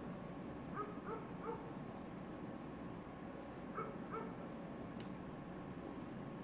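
A dog giving short barks: three quick ones about a second in, then two more around four seconds, over a steady background hiss.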